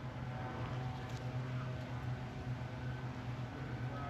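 Steady low mechanical hum in the background, with one faint tick about a second in.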